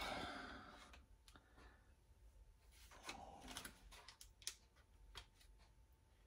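Near silence, with a few faint light clicks and taps from hands laying thin pats of butter onto cake mix in a glass baking dish.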